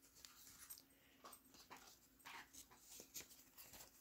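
Near silence: room tone with a few faint, soft, irregular rustles.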